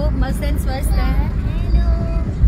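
Steady low road rumble inside a moving car's cabin, with a high-pitched voice talking over it for about the first second.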